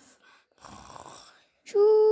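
A child's soft breathy breath, then a loud held voiced hum near the end, as the child play-acts going to sleep.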